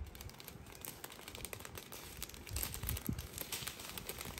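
Small plastic packets of diamond-painting drills being handled, faint irregular crinkling of the plastic.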